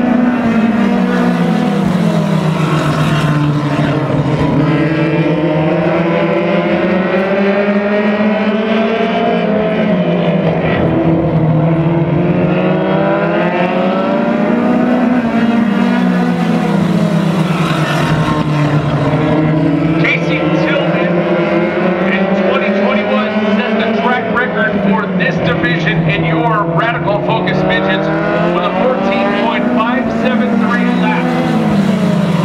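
Focus midget race cars with Ford Focus four-cylinder engines lapping a speedway under race speed. The engine note climbs and falls again and again as the cars circle the track, loudest as they pass close by.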